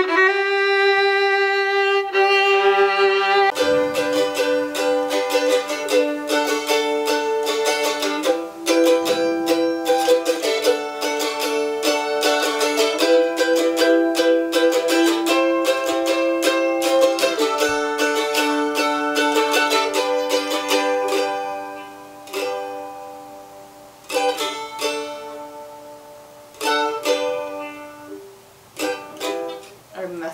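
A violin plays long bowed notes for the first few seconds. A mandolin then takes over with fast picked notes and sustained, tremolo-like lines, thinning after about twenty seconds to quieter, scattered plucks.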